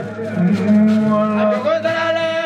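A man singing, holding one long low note for about a second, over a steady low hum.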